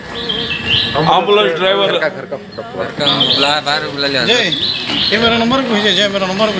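A man talking, with small birds chirping in the background, most clearly just after the start and again around the middle.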